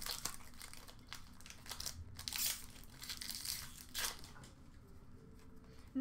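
Trading-card pack wrappers crinkling and cards being handled, in several short rustles with quieter handling between.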